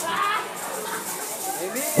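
Indistinct voices over a steady hiss in a large hall, in a lull before the band starts playing.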